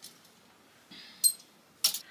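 Plastic clothes hangers clicking against a metal clothing rail as one is lifted off: a brief rustle about halfway, then two sharp clicks.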